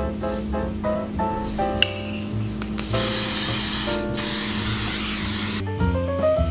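Hairspray sprayed onto hair in two long hissing bursts, starting about halfway through and stopping shortly before the end. Background music plays throughout.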